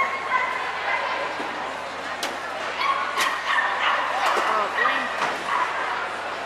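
A small dog yipping and barking, high-pitched, several times over the chatter of a crowd in a large hall.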